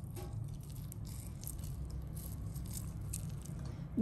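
A lime squeezed by hand over coarsely pounded chili paste in a granite mortar: faint, irregular small wet crackles as the fruit is pressed and its juice runs into the chilies, over a steady low hum.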